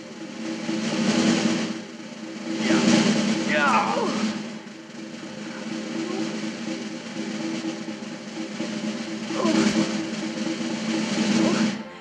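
Suspense film score: a snare drum roll over a held low chord, swelling and easing in waves and building again near the end.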